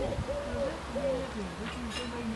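Distant, indistinct conversation: several voices talking at once, too far off to make out words.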